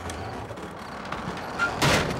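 A low, steady rumble, then a sudden loud crash near the end.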